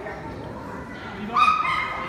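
A dog gives high-pitched yips, beginning about one and a half seconds in, over a murmur of voices in a large hall.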